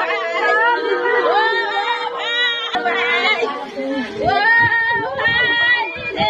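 Several women wailing and crying aloud in grief, their voices overlapping in long, sliding cries; the wailing breaks off abruptly about halfway through and other voices take up the crying.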